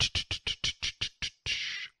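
A quick run of about nine short percussive hits, roughly six a second, ending in a brief hiss, like a drum roll.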